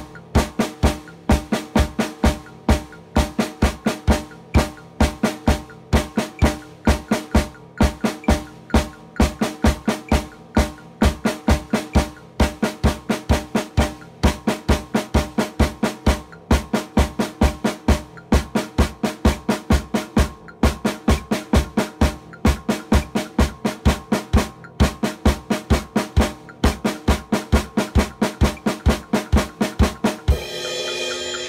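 Acoustic drum kit played with sticks in a steady groove, kick drum and snare strikes landing about three or four times a second.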